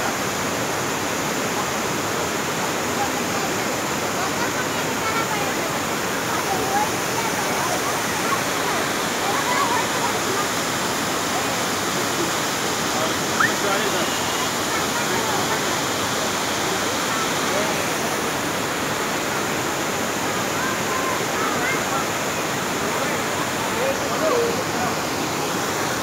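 Steady rushing of a waterfall, an even noise that holds at one level throughout, with faint voices of people scattered over it.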